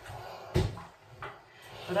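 Steam iron set down flat on a padded ironing board with a thud about half a second in, followed by a lighter knock a little after a second.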